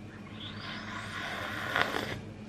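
Slurping sip of tea from a ceramic mug: a hissing draw of air and liquid lasting about a second and a half, with a small click near the end.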